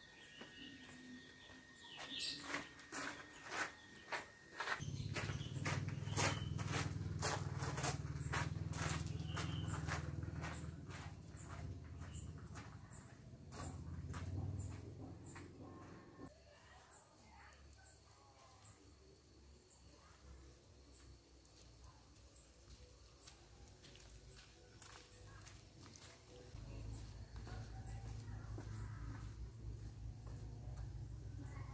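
Footsteps on a stone-paved and gravel path, about two steps a second, thinning out a little past halfway. A low rumble runs under them at times.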